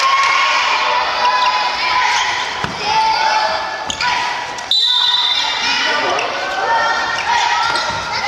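Children shouting and calling out in drawn-out, high voices in a reverberant gymnasium. A few sharp thuds of the dodgeball being thrown and caught or hitting the floor come through midway.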